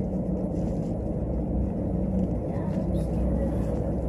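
Steady low rumble of an elevator car travelling in a deep shaft, heard from inside the car.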